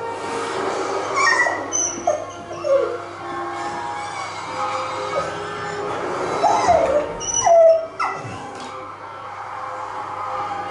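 A dog whining and whimpering while left alone, in several short cries that rise and fall in pitch. The longest and loudest cry comes about seven seconds in.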